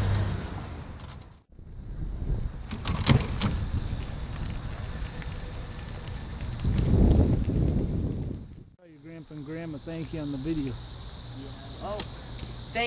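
Wind rumbling on the microphone of a camera riding along on a bicycle, mixed with tyre and road noise. It swells about seven seconds in and then cuts off abruptly, giving way to insects chirping.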